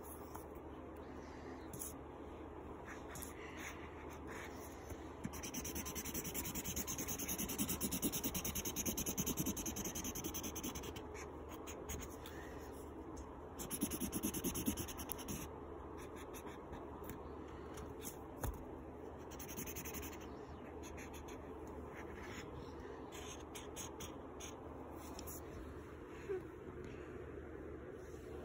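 Felt-tip marker scribbling on paper, colouring in an area with rapid back-and-forth strokes. The scratching grows louder from about five seconds in until about eleven seconds, and again briefly around fourteen seconds.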